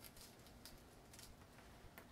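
Near silence, with a few faint soft clicks from a small knife cutting open a kumquat.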